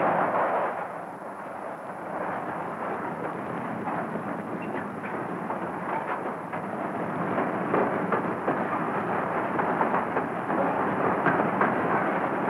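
Hot coke being pushed out of a coke oven, a steady rumbling roar of fire with crackling throughout, a little louder at the very start and again after about eight seconds.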